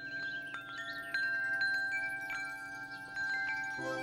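Metal tubular wind chimes ringing, their tubes struck at irregular moments so that the long ringing notes overlap.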